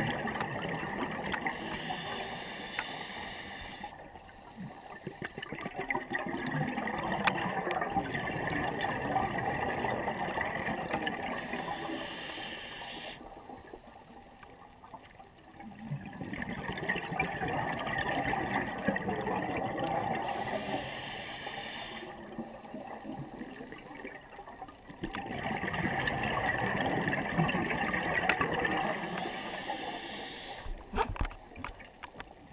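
Scuba regulator breathing underwater: long runs of exhaled bubbles gurgling, broken by quieter pauses for the inhale about every nine seconds, three breaths in all.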